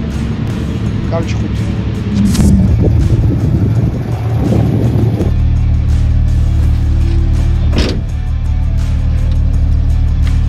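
Drift car's engine idling steadily, heard inside the cabin, settling to an even low hum from about halfway in.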